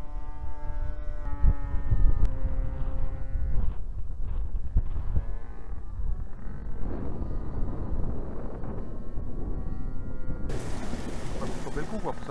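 Large radio-controlled model plane's engine droning in flight, its pitch shifting up and down a few times as it passes and changes throttle, over a low wind rumble on the microphone. A burst of hiss near the end.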